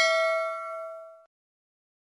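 Notification-bell sound effect: a bell chime ringing on and fading away, dying out about a second and a quarter in.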